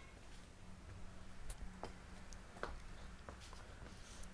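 Quiet garage room tone: a faint steady hum with a few soft clicks and taps scattered through it.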